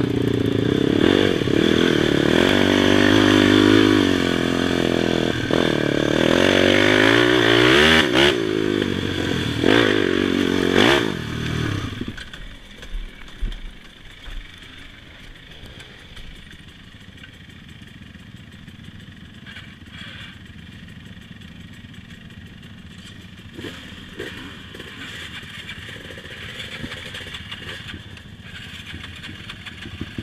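Yamaha YFZ450 quad's single-cylinder four-stroke engine running under throttle, its pitch rising and falling as it revs. About twelve seconds in it drops away to a much quieter low running with a few knocks and rattles, and picks up again at the very end.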